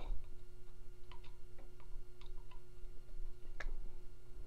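Light, irregular clicks and ticks of a screwdriver blade and pump parts being handled as the screwdriver is fitted into the back of the pump motor to hold its shaft, with one sharper click near the end, over a faint steady hum.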